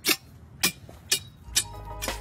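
Four quick chops of a long Christmas-tree shearing knife slicing through fir branches, about two a second, over quiet background music.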